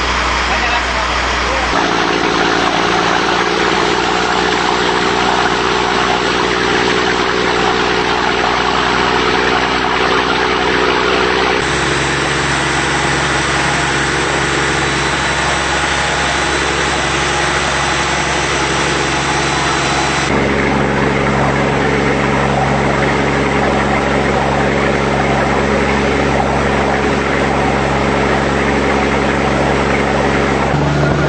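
Boat engine running steadily under way: a constant drone with a loud hiss of wind and water over it. The drone's pitch and tone change abruptly a few times.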